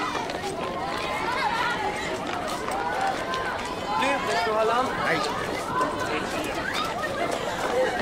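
A crowd of schoolchildren chattering and calling out all at once, many high young voices overlapping, with running footsteps.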